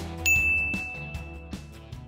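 A single bright notification-bell ding about a quarter second in, ringing out for about a second. It plays over background music with a steady beat.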